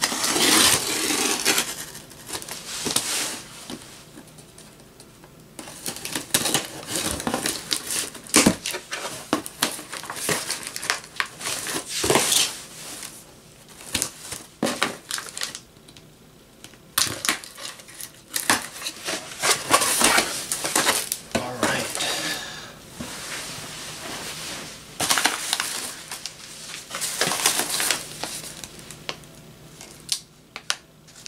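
Packing tape being ripped off a cardboard shipping box in irregular long tearing pulls, with cardboard flaps scraping and crumpled newspaper packing rustling between them.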